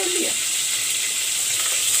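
Squeezed, soaked soya chunks frying in hot oil in a metal pot: a steady sizzling hiss.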